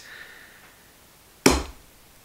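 A single sharp knock with a low thud about one and a half seconds in, as the metal Master Lock key box is tipped down onto the tabletop under a hand.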